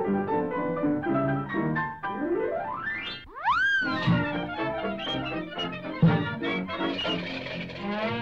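Cartoon orchestral score: quick pitched notes, a rising glide about two seconds in, then a high whistling tone that swoops up and falls back, and a sharp thump about six seconds in.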